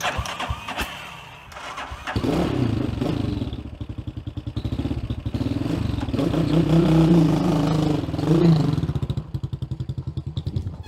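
Small motorcycle engine being started, with a few clicks and knocks before it catches about two seconds in. It then runs with a fast, even pulsing beat, revving as the bike pulls away, and drops in level near the end.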